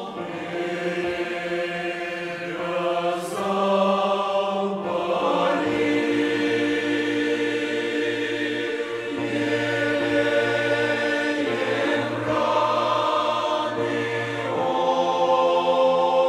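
Mixed church choir of men's and women's voices singing a slow hymn in held chords that change every few seconds, with a low bass part filling in through the middle of the passage.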